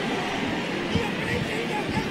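Steady arena crowd noise with faint music underneath.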